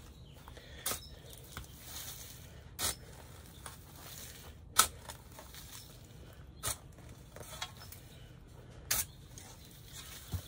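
A round-point shovel being driven into soil and compost, five short sharp scrapes about two seconds apart, the one near the middle the loudest.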